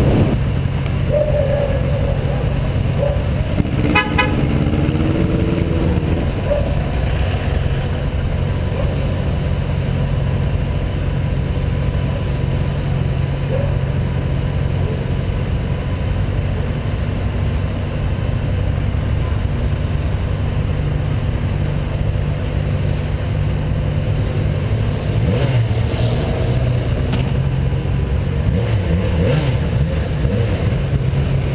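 Motorcycle engine running steadily at low speed in slow town traffic, heard from the bike's onboard camera. A brief horn-like toot sounds about four seconds in.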